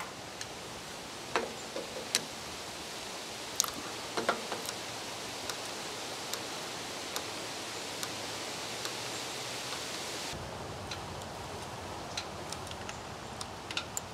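Hand grease gun being worked on a grease fitting at a front-end loader arm's pivot: scattered clicks and handling sounds over a steady background hiss.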